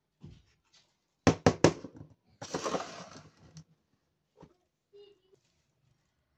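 Miniature plastic toy water dispensers being handled: three quick clicks of hard plastic knocking together about a second in, then a rustle lasting about a second, then a lighter knock and a short squeak near the end.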